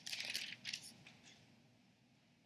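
Thin Bible pages rustling and crinkling as they are leafed through, a few crisp bursts in the first second that fade away.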